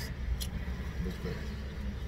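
Steady low rumble of a car idling, heard from inside the cabin, with one brief click about half a second in.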